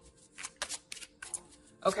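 A deck of tarot cards being shuffled by hand: a string of short, irregular papery flicks and snaps.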